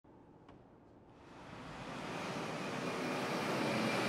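Road and wind noise of a car driving with its windows down, fading in about a second in and growing steadily louder.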